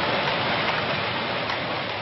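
Jute power looms running in a mill, weaving hessian sacking: a steady, dense machine noise.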